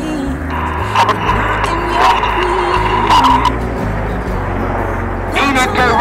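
BAE Hawk T1 jets in a climbing formation: a rush of jet noise with a steady whine, fading after about three and a half seconds. Music with a stepping bass line plays from public-address speakers underneath, and a man's commentary resumes over them near the end.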